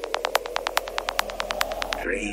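Psytrance breakdown with the kick drum dropped out: fast, even electronic ticks, about eight a second, over a low rumble that grows louder.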